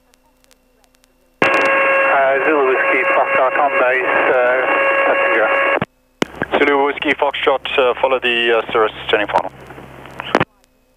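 Air traffic radio voice transmissions heard through the aircraft's radio audio: two calls back to back, thin-sounding and starting and stopping abruptly, the first with a steady whine under the voice. Before the first call there is only a faint hum.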